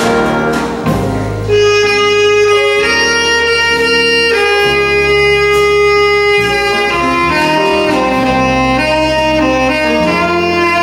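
Jazz big band playing a slow, bluesy ballad: saxophones and brass in long held notes over bass, guitar, piano and drums.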